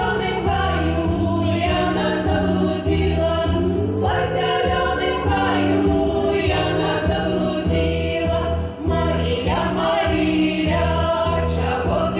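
A women's folk vocal ensemble sings a Belarusian folk song together at microphones, over a low, steady accompaniment.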